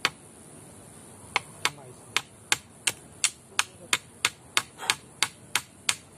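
A steady series of sharp, evenly spaced clicks, about three a second, starting a little over a second in, over a steady high-pitched hiss.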